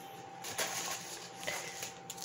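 Faint handling noise: a few soft clicks and light rustling, sounding like a plastic-wrapped heat pad packet being picked up, over low room hum.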